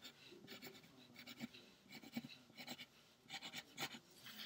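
Faint pencil scratching on paper in a run of short, irregular strokes as the rungs of a small ladder are drawn.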